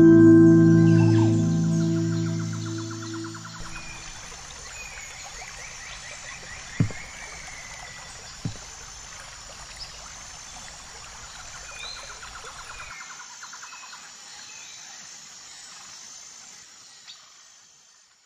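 Soft ambient music with held tones fades out over the first few seconds, giving way to outdoor ambience: birds chirping and a pulsing trill over a steady hiss, with two brief dull thumps in the middle. The ambience fades away near the end.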